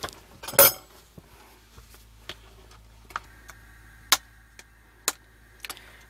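Cookware being handled on a gas hob: a clatter about half a second in, then a few light clicks and knocks spaced about a second apart as pans and a plastic container are moved and set down.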